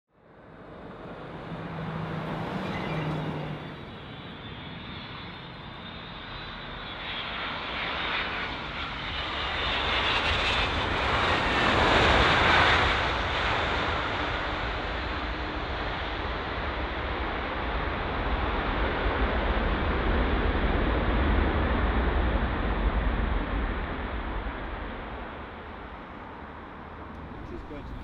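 Boeing 747-400 landing: the noise of its four jet engines swells to a peak about twelve seconds in, with a falling whine as it passes. A long low rumble follows and fades away near the end.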